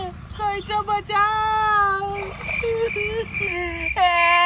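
A high voice singing in long, drawn-out, wavering notes, with a steady thin high tone joining about halfway through.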